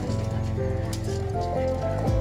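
Background music: held melodic notes stepping in pitch over a steady low bass.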